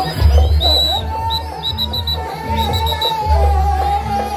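Jaranan gamelan music playing loudly: a long, held melody line with slight wavering, over deep drum and gong.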